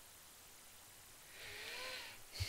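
Near silence for over a second, then a faint rustle near the end as tarot cards are slid across the cloth covered table.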